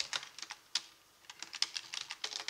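Typing on a computer keyboard: irregular keystrokes, a short pause about a second in, then a quicker run of keys.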